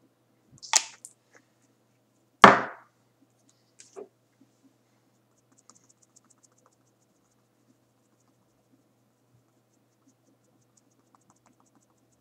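Handling sounds of small objects close to the microphone: a sharp click about a second in, a louder knock a couple of seconds in, and a smaller knock around four seconds, then only a few faint ticks.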